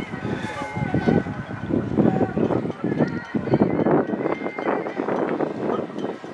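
Overlapping chatter of several people talking, with no single clear voice.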